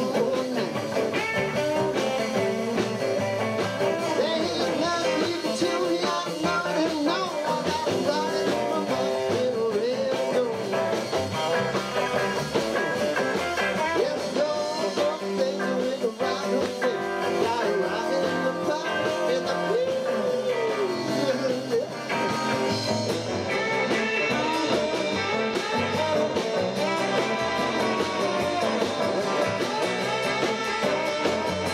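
Live rock and roll band playing electric guitars and drums, with a vocal shout about eight seconds in.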